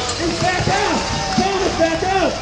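People talking over steady outdoor crowd noise.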